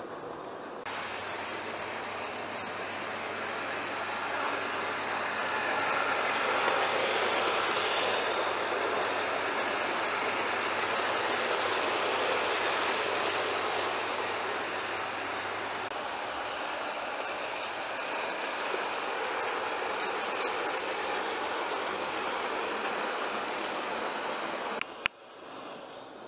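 OO gauge model goods train running along the track: the locomotive's motor whirs and the wheels rattle on the rails. The sound grows louder over the first several seconds as the train draws near, then carries on a little quieter.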